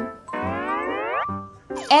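A cartoon-style rising 'boing' sound effect lasting about a second, over light children's background music with a steady beat.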